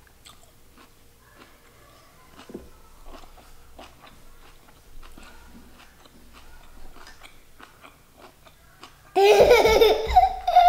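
Faint close-up chewing of a collard green rice wrap with the mouth closed, soft wet mouth clicks. About nine seconds in, a child laughs loudly.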